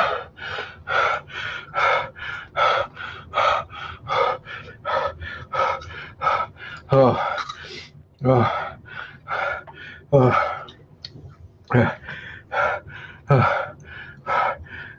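A man panting in quick voiced gasps, about two to three a second, with now and then a longer breath that falls in pitch, from the burn of an extreme hot sauce.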